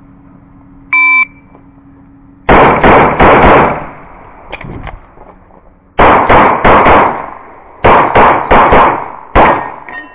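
An electronic shot timer gives one short high beep about a second in. A CZ SP-01 Shadow pistol then fires in four quick strings of shots, with short pauses between them and a single last shot near the end, about 8.4 seconds after the beep.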